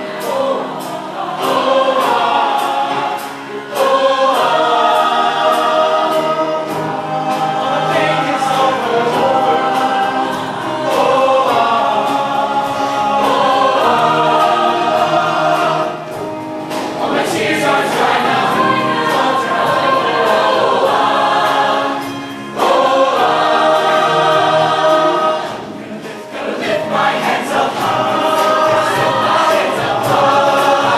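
Mixed show choir singing in full harmony with live band accompaniment; the sound drops briefly between phrases a few times.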